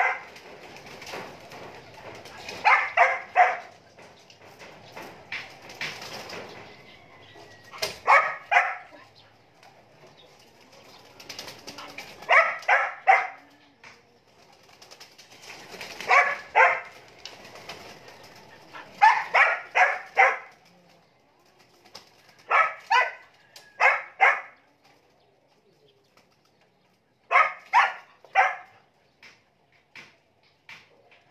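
Pigeons cooing near a backyard loft, in short bursts of three or four notes that repeat every few seconds.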